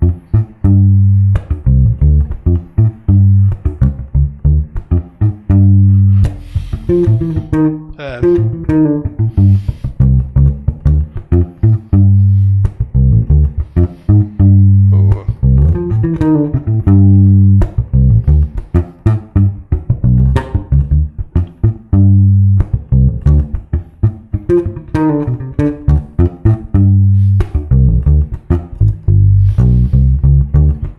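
Solo fingerstyle electric bass, a Precision-style bass, playing a repeating low groove with a fast rising phrase from a lick worked in about every eight seconds. The phrase is being practised at speed with a few fumbles.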